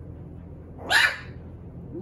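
A five-week-old puppy gives a single short, sharp bark about a second in, during rough play over a toy.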